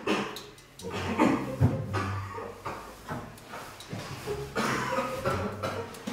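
A long paper strip rustling and crackling as it is pulled out of a man's mouth, with faint mouth and breath noises.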